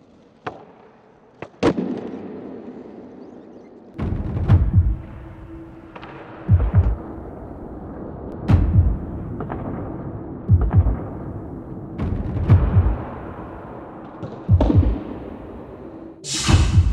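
Skateboards on smooth concrete flatground: wheels rolling steadily, broken every couple of seconds by the sharp crack of a tail pop and the slap of the board landing a flip trick.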